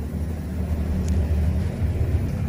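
A low, steady rumble, with a faint click about a second in.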